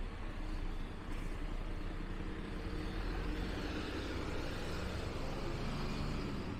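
City bus engine running with a steady low rumble, with a little more hiss building in the second half.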